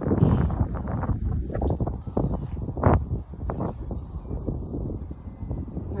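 Wind buffeting the phone's microphone in uneven gusts, a heavy low rumble, with a few brief sharper sounds near the middle.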